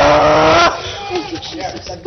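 A woman cries out loudly on one long, slightly falling note for under a second, then makes fainter broken vocal sounds.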